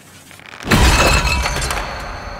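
Film sound effect: a sudden loud crash of glass shattering and clattering a little over half a second in, fading away over the next second with a high ringing left behind. It is a tripwire noise trap going off.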